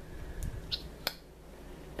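A new Maybelline Mega Plush Volume Express mascara being opened for the first time: a few small plastic clicks as the cap is twisted and the wand drawn out of the tube, the sharpest click about a second in.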